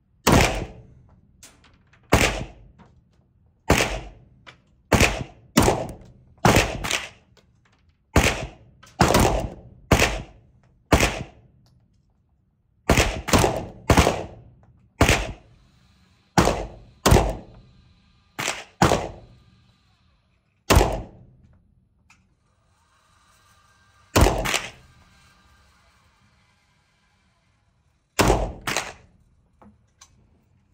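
Beretta 92 FS 9mm pistol fired shot after shot, about two dozen sharp reports each ringing briefly off the walls of an indoor range. The shots come in uneven strings, some half a second apart, others a second or two apart, with longer pauses near the end.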